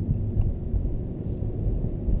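Steady low road and tyre rumble inside the cabin of a moving 2013 Nissan Leaf electric car, with no engine note.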